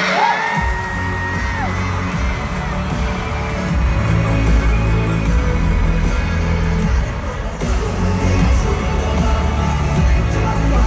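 Loud K-pop music over an arena PA with a heavy bass beat, which comes in about half a second in and grows stronger after a few seconds, over a cheering concert crowd. Near the start a high note slides up, holds for about a second and a half, then drops away.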